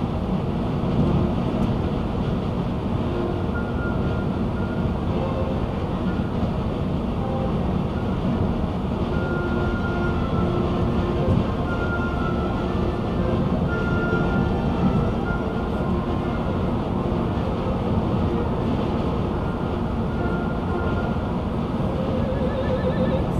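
Steady road and tyre rumble heard from inside a car cabin at highway speed, holding an even level throughout. Short held tones come and go faintly over it, like faint music.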